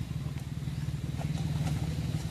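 A small engine running steadily: a low, even hum.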